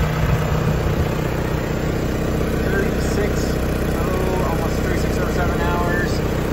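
Deutz diesel engine of a Genie GTH-5519 telehandler idling steadily, heard from the operator's seat.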